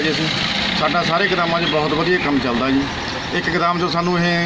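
A man speaking Punjabi, with a steady low hum running underneath, like an engine idling nearby.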